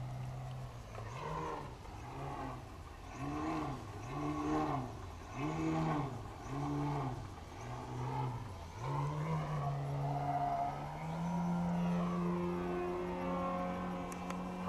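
Engine and propeller of a 95-inch 3DHS Extra 330 giant-scale RC aerobatic plane in flight. Its pitch swells up and down about once a second, seven times, then settles into a steadier note that slowly rises near the end.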